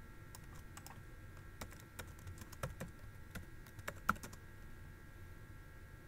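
Computer keyboard being typed on: irregular light key clicks, thickest in the middle of the stretch with one sharper click about four seconds in. A faint steady high hum runs underneath.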